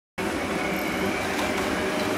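Steady city street ambience: a continuous, even hum and hiss with no distinct events, starting just after a moment of silence.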